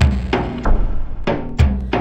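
Chill-out music with low drum strokes, about five in two seconds and unevenly spaced, over sustained tones.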